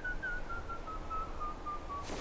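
A single thin, whistle-like tone in a film soundtrack, held and slowly sliding down in pitch with a slight waver, over faint low background noise.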